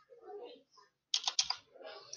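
Computer keyboard keystrokes: a quick run of several sharp clicks about a second in, as a number is typed into a field.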